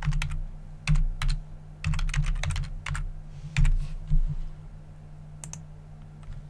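Typing on a computer keyboard: short runs of keystrokes over the first four seconds or so, then a single click about five and a half seconds in, over a steady low electrical hum.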